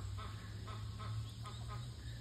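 Week-old Muscovy ducklings peeping softly, a scattered run of short, high chirps over a steady low hum.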